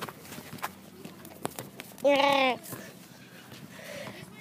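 A young person's wordless shout or squeal, one short pitched cry about half a second long a little after two seconds in, with a few faint taps and scuffs around it.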